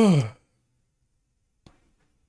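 A man's short, voiced sigh at the very start, falling in pitch. A faint click near the end.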